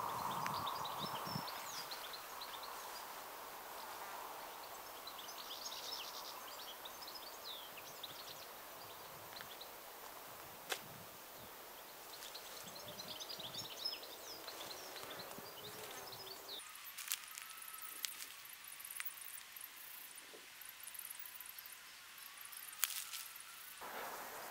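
Faint outdoor ambience: light wind with small birds chirping now and then. The low wind rumble cuts off suddenly about two-thirds of the way through.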